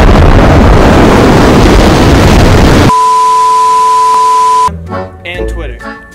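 A loud, distorted explosion sound effect for about three seconds that cuts off abruptly into a steady high censor bleep lasting nearly two seconds. Talk and laughter return near the end.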